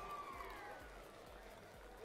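Faint background sound with a thin tone that holds, then falls away and fades out within the first second, leaving near silence.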